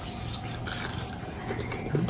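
A person chewing french fries, faint against steady low room noise, with a small click near the end.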